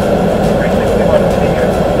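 Steady hum inside the cabin of an idling car.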